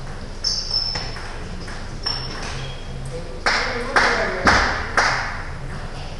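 Table tennis ball being struck and bouncing during a rally in a hall: a few light clicks and pings, then four louder hits about half a second apart, each ringing briefly in the room.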